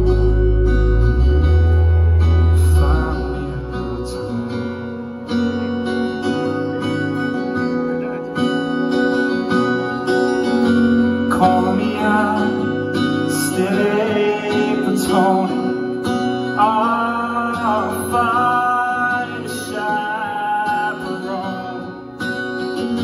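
Live band music: acoustic guitar strumming over a full band, with a voice singing. Heavy bass drops out about four seconds in, and the singing rises over the guitar in the second half.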